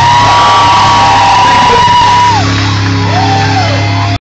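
Rock music: a held high note bends up, sustains and falls away about two seconds in, with another short bent note near the end, over a sustained low chord.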